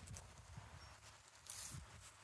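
Faint, irregular low thumps of someone walking while filming, with a short rustle about one and a half seconds in.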